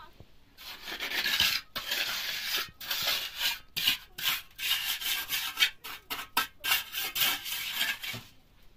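A hand tool scraping on cement mortar: a fast, irregular run of rasping strokes that begins about half a second in and stops just before the end.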